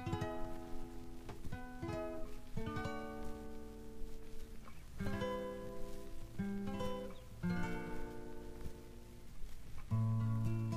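Instrumental intro of a folk song: a guitar playing a slow series of chords, each left to ring and fade before the next.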